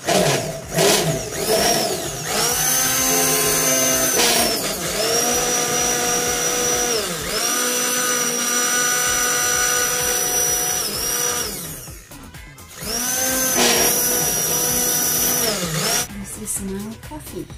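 Hand-held immersion blender whirring in a glass mason jar of coffee, run in about five bursts of one to four seconds each. Its pitch rises as the blade spins up and falls as it stops.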